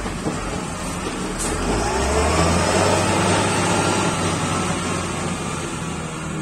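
Wheel loader's diesel engine running, revving up with a rising pitch about a second and a half in, then holding a steady drone as the machine drives and turns.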